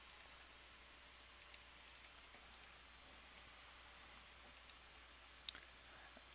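Near silence with a few faint computer mouse clicks, some in quick pairs, the sharpest near the end.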